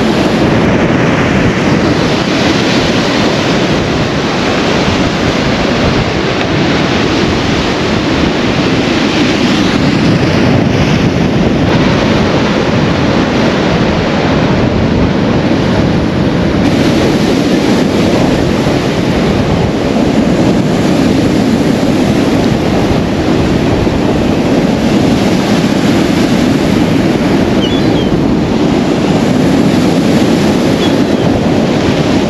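Rough sea surf breaking and surging against a concrete sea wall: a loud, continuous rush of water with no let-up.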